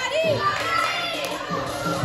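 Girls' voices chattering over floor-exercise music playing on the gym's speakers, in a large echoing hall.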